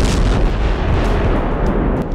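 Explosions over a dramatic music bed: a sharp blast right at the start, then heavy low rumbling with smaller blasts.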